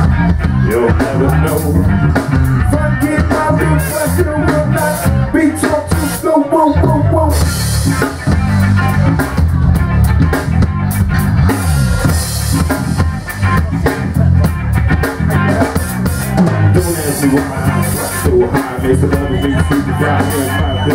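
Live rock band playing: drum kit, electric bass and electric guitar, with a strong, busy bass line under a steady beat.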